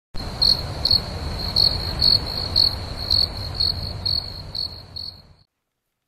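Crickets chirping in the woods at night: a steady high trill with louder chirps about twice a second over a low rumble, fading out about five seconds in.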